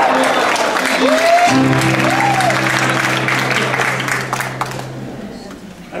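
Audience applauding, with two short vocal whoops, while a live band sounds a low held chord; the applause and chord fade out about five seconds in.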